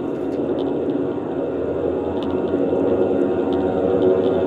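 A dense, low droning rumble that slowly grows louder, a dramatic swell of horror-film sound design.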